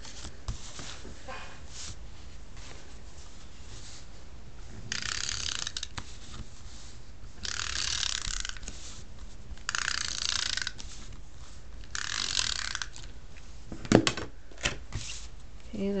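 Stampin' Up SNAIL adhesive tape runner drawn across cardstock in four separate strokes, each about a second of ratcheting whir, followed by a single sharp click.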